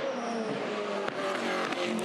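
Supercars race car's V8 engine, a Holden Commodore, running hard through a corner and its exit, the pitch holding fairly steady with small rises and falls.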